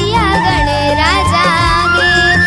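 Chhattisgarhi devotional song to Ganesha: a melody with gliding, ornamented notes over a steady rhythmic beat.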